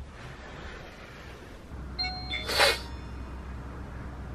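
A low steady hum, with a short electronic chime about halfway through, followed at once by a brief burst of noise.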